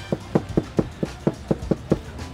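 A large kitchen knife chopping cooked carnitas pork on a plastic cutting board: a steady run of sharp knocks, about four to five a second.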